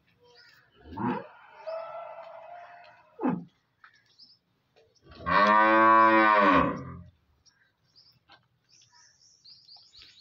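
A cow moos once, a long, low call of about two seconds whose pitch rises and then falls, about five seconds in. A fainter, shorter sound comes a few seconds before it.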